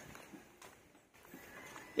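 Faint footsteps on a concrete road: a few soft, scattered taps.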